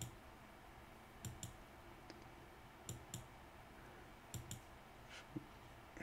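Computer mouse clicking, faint against a quiet room: a click at the start, then three quick double clicks spaced about a second and a half apart.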